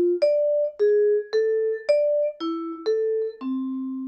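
Musser vibraphone played with yarn mallets in a slow string of single notes, about two a second and at changing pitches. Each note rings clearly until the next bar is struck, then is cut off cleanly: one mallet dampens the ringing bar as another hits the new note, the 'touch tone' dampening technique. The last note is still ringing at the end.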